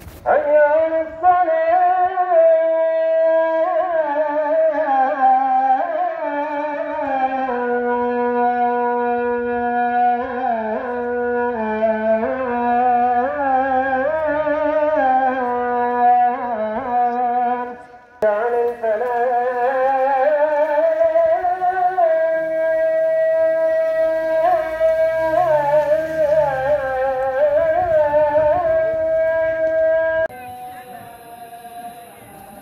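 A lone man's voice in a long, ornamented Islamic chant, holding drawn-out notes with wavering runs, with one short breath break about 18 seconds in.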